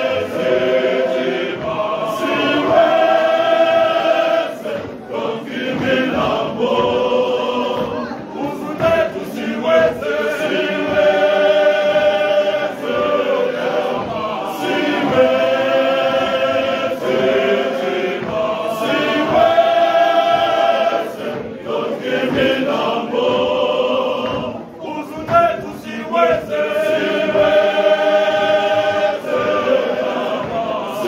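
A church male voice choir singing a hymn in harmony. The voices hold sustained chords in phrases of a few seconds, with brief breaks between phrases.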